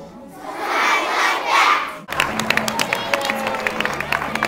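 Audience cheering and shouting at the end of a song, swelling for about two seconds; then, after an abrupt cut, hand clapping with many sharp separate claps.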